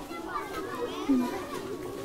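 Many children's voices chattering and calling together in the background, with a woman saying a couple of words about a second in.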